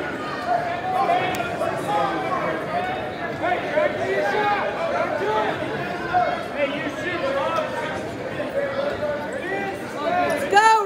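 Several voices talking and calling out at once, overlapping one another, with the echo of a large gym.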